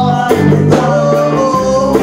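Live band music: a man singing into a microphone over guitar accompaniment, loud and continuous.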